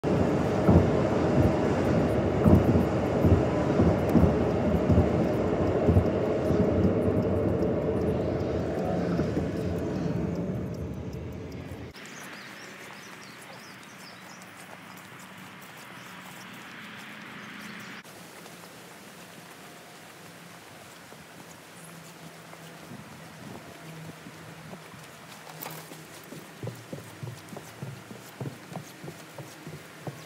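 Road noise inside a moving car's cabin, a loud low rumble with frequent bumps, cuts off abruptly about twelve seconds in. Quieter outdoor background follows, and near the end footsteps knock at an even walking pace, about two a second, on a wooden footbridge.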